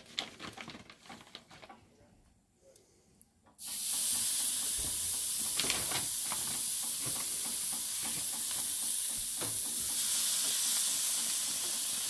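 Raw ribeye steaks hitting a hot grill grate and sizzling. After a few faint clicks and rattles, a loud, steady sizzle starts suddenly a few seconds in, with a couple of light knocks as more meat goes on.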